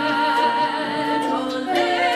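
A female lead voice and a harmony voice singing a slow lullaby in two parts, holding long notes with vibrato; the sung voices stand out above the harp and ukulele accompaniment.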